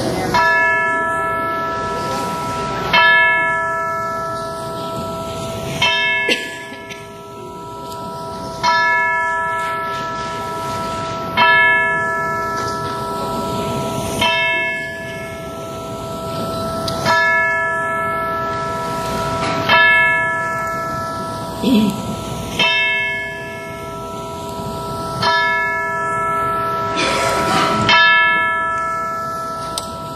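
A single church bell tolling slowly, struck about eleven times at an even pace of roughly one stroke every three seconds. Each stroke rings on into the next.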